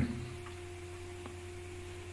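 Quiet, steady electrical hum: a low drone with a constant mid-pitched tone above it, unchanging throughout.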